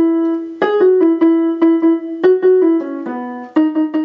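Casio electronic keyboard playing a single-note vocal melody in a piano tone, about three notes a second.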